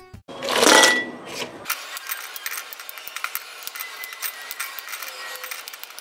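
Crunchy sugar-coated pork rind pieces being handled: a loud rustle about half a second in, then many light, scattered clicks and crackles as the hard pieces are moved about.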